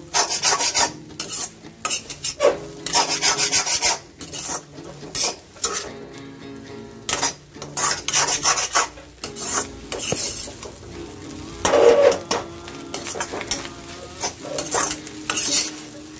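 Steel spatula scraping and stirring scrambled egg with spring onion around a kadai in repeated, irregular strokes, over a light frying sizzle.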